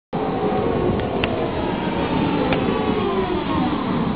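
Tatra T6A2D tram running past close by: steel wheels rumbling on the rails, with a motor and gear whine falling in pitch as it slows. There are a couple of light clicks.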